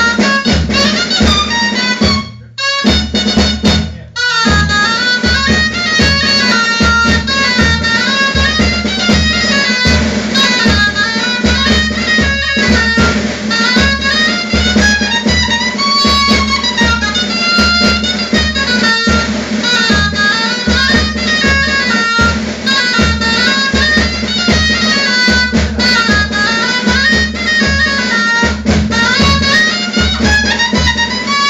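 A dulzaina, the Castilian double-reed shawm, plays a lively folk melody over a snare drum beating a steady rhythm. The melody breaks off briefly twice in the first few seconds, then runs on without a break.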